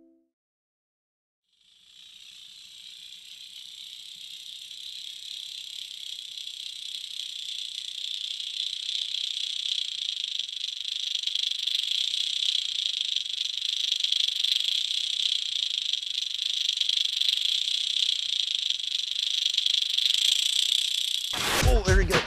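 Internal rattles of a lipless crankbait recorded underwater as the lure is pulled through the water: a steady, high-pitched hissing rattle that starts about two seconds in and slowly grows louder. Music cuts in just before the end.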